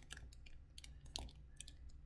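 Faint scattered clicks and crinkles of a clear plastic bag and the plastic model-kit sprues inside it being handled.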